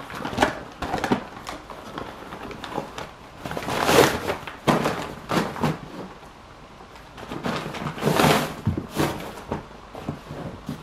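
Paper-lined packaging being pulled off and handled around a new messenger bag: rustling and crinkling, with two longer sweeps of rustle about four and eight seconds in, and scattered light knocks and taps between them.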